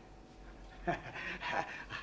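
A man's short breathy laugh, starting about a second in.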